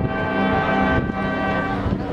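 High school marching band's brass playing long sustained chords, moving to a new chord about a second in.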